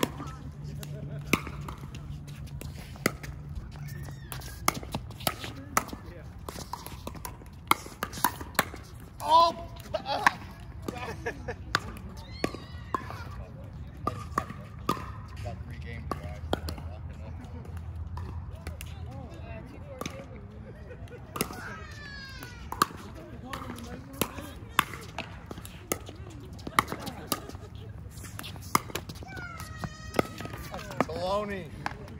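Pickleball paddles hitting the hollow plastic ball and the ball bouncing on the hard court: many sharp pops at irregular intervals, with voices calling now and then.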